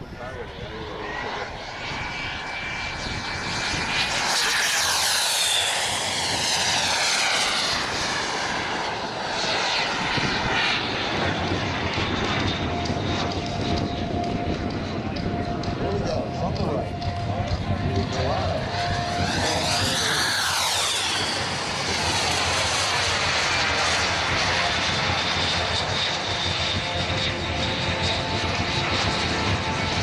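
Radio-controlled turbine jets flying passes overhead: a continuous jet whine with a rush of air. The whistle sweeps in pitch as the jets go by, about 4 seconds in and again about 20 seconds in.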